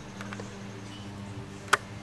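Faint steady low hum, with one sharp click about three-quarters of the way through.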